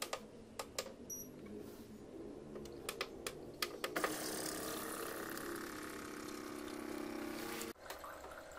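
Aquaguard AquaSure purifier's pump running with a steady hum and a hiss of water, starting about halfway through and cutting off suddenly near the end. A few sharp clicks come before it.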